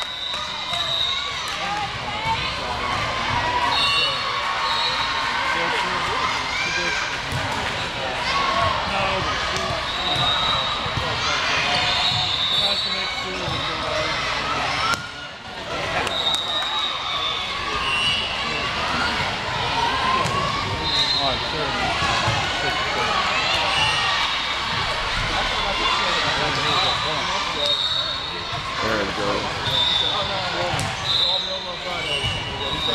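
Busy indoor volleyball gym: many overlapping voices of players and spectators, and volleyballs being hit and bouncing off the hard court floor, echoing in the large hall. Short high steady tones recur every few seconds.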